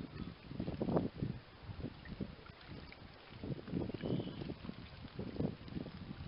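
House sparrow bathing in a shallow ceramic bird bath, splashing the water in irregular bursts.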